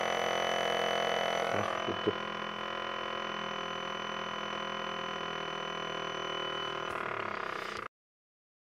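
Small DC motor spinning a wheel, running with a steady hum-like whine, with a few brief knocks about two seconds in. It cuts off suddenly near the end.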